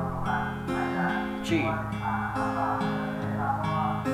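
Acoustic guitar fingerpicked in an arpeggio pattern through the song's chords, the notes ringing on and the chord changing about once a second.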